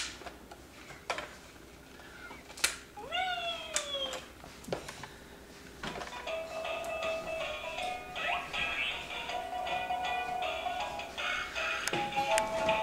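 Fisher-Price musical snail toy starting its electronic tune about halfway through, set off by the child's slight movement. Before it, a few light clicks and a short cry that glides up and then down in pitch.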